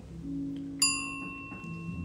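A single bell-like ding, struck once about a second in, ringing on for about a second as its high overtones fade quickly. A faint low hum sits under it.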